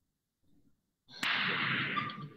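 A pool cue striking the cue ball with one sharp click about a second in, followed at once by a loud burst of hissing noise that fades over most of a second.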